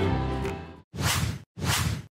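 Background music fades out, then two whoosh sound effects follow, each about half a second long: an editing transition swoosh.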